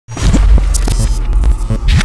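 Logo intro sound effect: a loud, deep hum with several short rising sweeps and crackling clicks.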